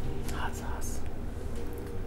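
A woman's brief breathy whisper about half a second in, over a faint steady low hum.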